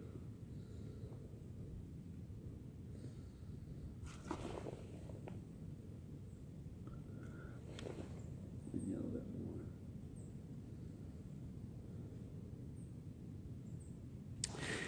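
Quiet outdoor background: a steady low rumble with a few faint clicks, two of them about four and eight seconds in, and a brief soft murmur a little after the second.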